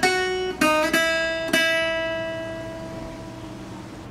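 Acoustic guitar playing a slow single-note melody, four plucked notes in the first second and a half. The last note rings on and fades away slowly.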